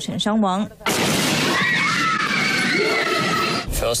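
A loud, even rush of noise starts suddenly about a second in, with high, wavering, shout-like voices heard through it.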